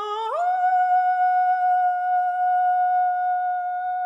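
Solo female voice singing: a note with wide vibrato slides up to a higher note just after the start, then holds it as a long, steady straight tone with almost no vibrato.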